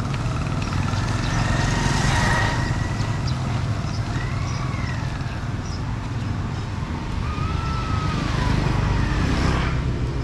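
Street traffic of motorbikes and scooters, with a steady low rumble and passing bikes swelling up about two seconds in and again near the end.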